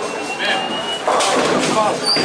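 Indistinct voices chattering in a busy bowling alley, with a louder noisy burst starting about a second in.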